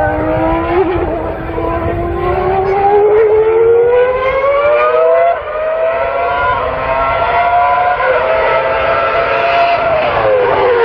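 Racing car engine accelerating hard, its pitch climbing steadily for about five seconds, then dropping sharply at a gear change and climbing again, with smaller steps down later on.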